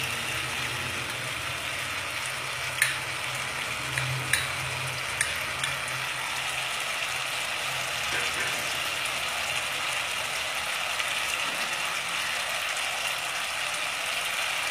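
Chopped-onion masala with Kashmiri red chili powder frying in oil in a pan: a steady sizzle, with a few sharp clicks between about three and five seconds in.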